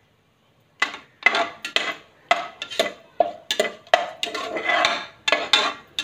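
A steel spoon stirring whole spices and cashews frying in oil in an aluminium pressure cooker. It scrapes and clinks against the pot in repeated strokes, about two or three a second, starting about a second in.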